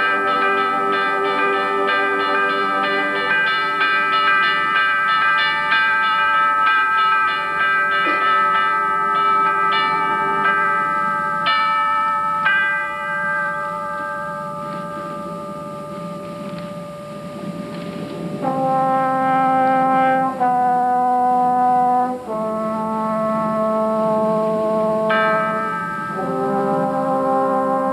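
High school concert band playing, led by brass: sustained chords over quick repeated notes, then a softer held passage, then loud block chords that change every couple of seconds.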